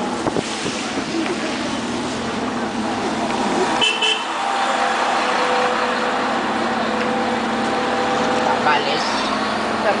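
Steady road and engine noise of a car driving through a town street. A car horn sounds: a brief high double toot about four seconds in, then a long, steady two-tone note held for a few seconds.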